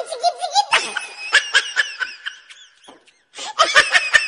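High-pitched laughter in quick, repeated bursts. It dies away about three seconds in and starts again near the end.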